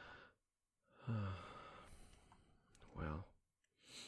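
A man's soft sigh close to the microphone about a second in: a low voiced start trailing off into a long breathy exhale, then a shorter voiced breath near the three-second mark.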